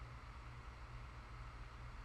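Quiet room tone: a faint, steady low hum under a light hiss.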